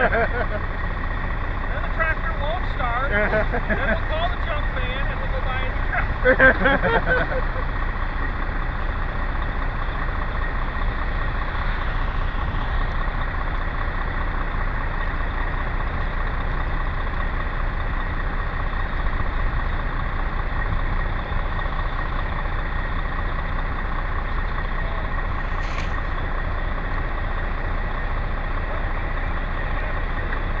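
Vintage John Deere tractor engine idling steadily, with a brief high squeak near the end.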